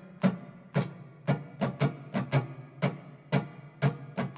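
Acoustic guitar strummed with the strings covered to deaden them, giving short percussive muted clicks, about three strokes a second in an uneven rhythm of quarter and eighth notes.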